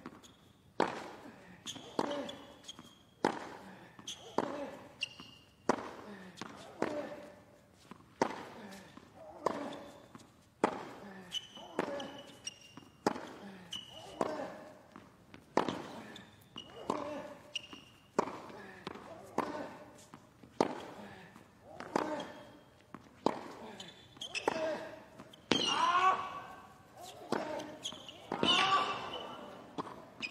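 A long tennis rally on a hard court: the ball struck by rackets and bouncing about once a second, each hit with a short grunt from the player, the exchanges getting louder near the end.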